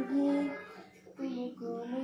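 A singing voice holding long, slowly bending notes, with a brief dip about a second in.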